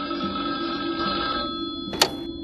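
A telephone ringing in one long ring that cuts off near the end, over a low, steady music drone.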